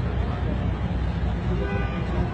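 Steady low rumble of street traffic, with a short horn-like tone near the end.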